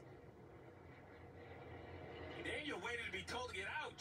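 A low, steady rumble for the first two seconds or so, then a man speaking over it in a television broadcast.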